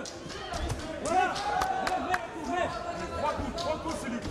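Boxing crowd and ringside voices shouting during a flurry of action, with a few sharp thuds of blows landing.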